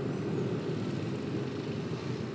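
Motorcycle riding noise: the bike's engine running steadily with road and wind noise, a low, even rumble without changes.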